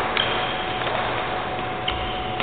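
Badminton rally: a sharp racket hit on the shuttlecock just after the start and another near the end, with a brief high squeak of shoes on the court floor after the first hit.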